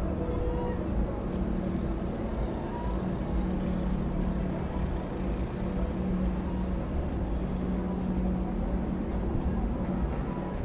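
Boat engines in a harbour running with a steady low drone and a constant hum, with no change in pitch.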